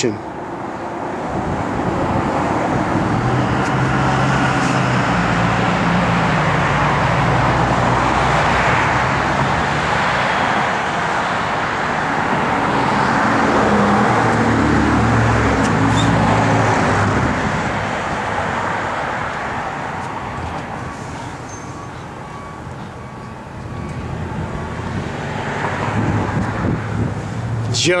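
Road traffic: motor vehicle noise that swells, is loudest around the middle, dies down a few seconds later and rises again near the end.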